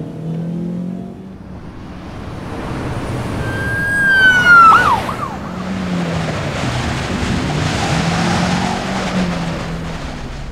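Car driving with steady engine and road noise. A siren sounds for about a second and a half around the middle, the loudest thing here, then its pitch drops sharply and it fades.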